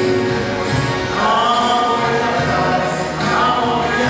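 A choir singing religious music in long held notes.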